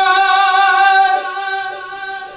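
A man's amplified devotional chant through a microphone, holding one long note that softens about a second in and trails off near the end.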